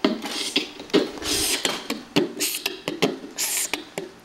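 A boy beatboxing into a handheld microphone: an uneven run of sharp mouth clicks and pops with hissing bursts between them.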